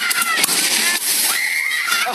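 Water jet spraying up and splashing down into churning water beside a round rapids-ride raft, a steady hiss of spray and slosh.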